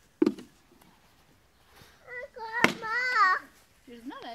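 A toddler's high-pitched, wordless vocalisation, wavering up and down for about a second and a half, in the second half. Earlier, about a quarter second in, a single short sharp thump.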